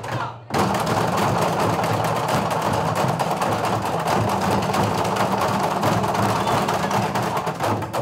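Group drumming with sticks on upturned plastic barrels, plastic cans and drums, a fast steady beat of many strikes that starts about half a second in.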